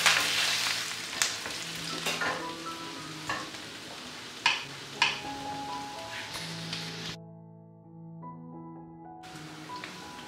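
Chopped garlic sizzling in melted butter and olive oil in a stainless steel pan, with a wooden spatula scraping and knocking against the pan several times in the first half. The sizzle drops out for about two seconds after the middle, then resumes.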